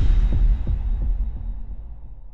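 Intro sound effect: a deep bass hit at the start, followed by a low throbbing rumble of a few pulses that fades away.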